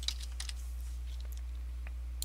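A few scattered light keystrokes on a computer keyboard, over a steady low electrical hum.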